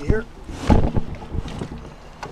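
Knocks and a heavy thump from someone shifting his weight about in an inflatable dinghy, with a short voice sound at the start.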